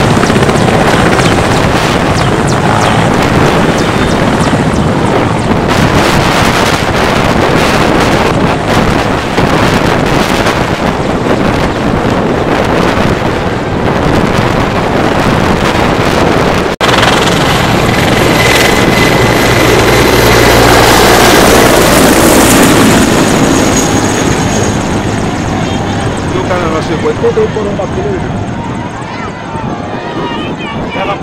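Mil Mi-8-family military transport helicopter taking off close by: the rotor and turbines run very loud, with wind rumble on the microphone. After a sudden cut about two-thirds of the way in, helicopter noise swells as the aircraft pass over and then fades near the end.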